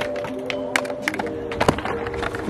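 Background music with held notes, over which a skateboard knocks on the concrete several times, the loudest knock near the end.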